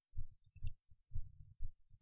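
Faint low thumps: about five soft, dull beats in two seconds, unevenly spaced.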